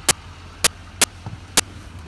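Regular sharp ticking, about two ticks a second, over a low steady hum.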